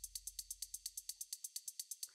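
Faint, rapid, even ticking at about seven or eight ticks a second, over a low hum that fades out about a second and a half in. It is an edited-in sound effect.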